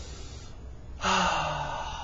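A man's long, breathy sigh about a second in, starting sharply with a little voice in it and fading away over about a second.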